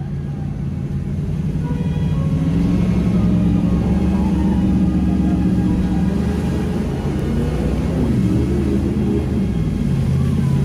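Jet boat engine heard from inside the cabin while running rapids, growing louder and rising in pitch over the first few seconds, then holding a loud drone that wavers up and down in pitch as the throttle changes.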